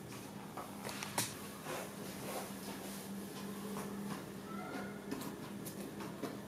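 Soft yeast dough being handled on parchment paper as rounds are pressed and poked into rings: faint scattered taps and rustles over a steady low hum.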